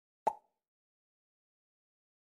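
A single short pop sound effect about a quarter second in.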